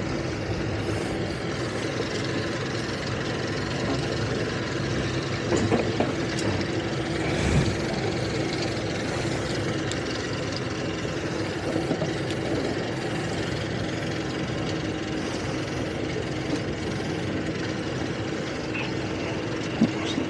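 Boat outboard engines idling: a steady hum over a constant hiss.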